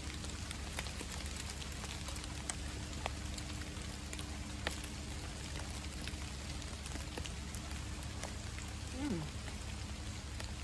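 Steady rain falling, an even hiss with many small sharp drop ticks scattered through it. About nine seconds in, a short falling hum from a person's voice.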